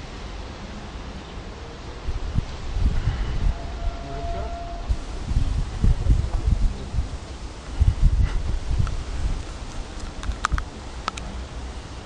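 Outdoor ambience with irregular gusts of wind rumbling on the microphone, strongest in the middle, and a few sharp faint clicks near the end.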